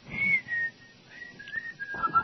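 A person whistling a short tune: a first note that slides down in pitch, then a string of shorter notes a little lower after a brief pause.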